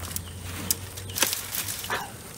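Long-handled loppers cutting brush: a few sharp snips and snaps of branches, with a cluster of crackles just past a second in and another snap near the end.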